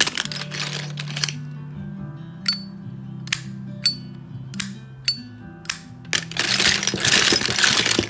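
Flip-top metal windproof lighters clicking as their lids are flipped open and snapped shut, about five sharp metallic clicks, several with a brief high ring, each lighter giving its own click. From about six seconds in there is a dense clatter of many metal lighters being rummaged through in a cardboard box. Background music plays underneath.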